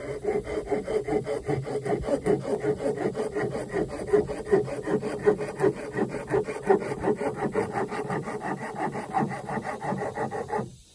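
Hand saw cutting through the tip of a debarked natural wooden fork, in quick, even back-and-forth strokes that keep up without a break.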